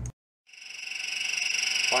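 A brief gap of silence, then a Harbor Freight mini mill's spindle running at high speed: a steady high-pitched whine that grows louder over the next second or so, with a faint regular pulse.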